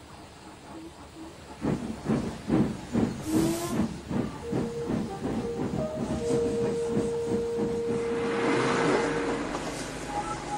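Steam locomotive chuffing at about three beats a second, then a long steam whistle with a brief higher note partway through, over the hiss of escaping steam that swells near the end.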